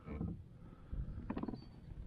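Low, uneven rumble of handling noise on a body-worn camera microphone while a pike is held in a kayak, with a short grunt-like vocal sound a little past a second in.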